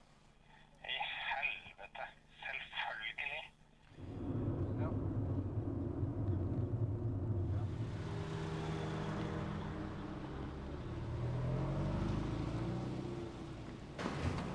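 A voice heard over a phone line for the first few seconds, then a car driving: a steady engine rumble whose pitch slowly rises and falls with the revs, joined by a hiss of road noise.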